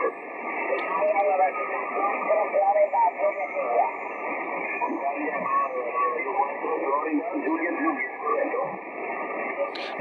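Single-sideband voice station on the 40-metre band heard through a Yaesu FTdx-10 HF transceiver's speaker: continuous talk with band noise, the audio narrow and thin, with the radio's noise reduction and notch filter applied, the notch cutting a narrow gap out of the middle of the audio.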